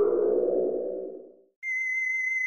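Electronic sound effects on a claymation film's soundtrack: a low synthesized tone that slides slightly downward and fades out about a second and a half in. Then, after a brief gap, a steady high-pitched electronic beep.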